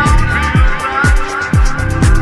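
Soulful house music: a steady four-on-the-floor kick drum about twice a second with hi-hats, under a high, wavering melodic line that glides in pitch.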